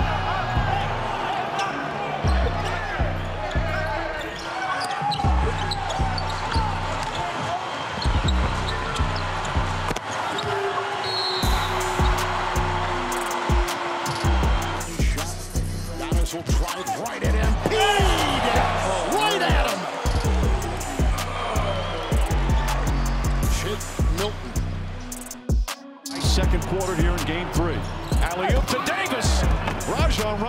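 Basketball dribbling on a hardwood court amid game sound, over background music with a steady beat.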